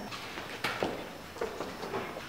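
Quiet room tone broken by a few light, sharp knocks, the first two close together and another about half a second later.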